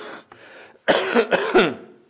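A man coughing into his hand: a short burst, then a fit of three or four loud coughs about a second in.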